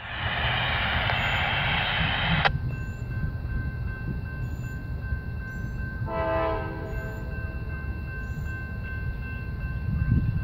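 Distant diesel locomotive horn: a long blast that cuts off abruptly about two and a half seconds in, then a short chord-like blast about six seconds in, over a steady low rumble.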